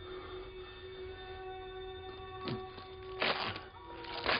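A quiet room with a steady low hum, broken by two short noises: a faint one about halfway through and a louder scrape-like rush a little after three seconds.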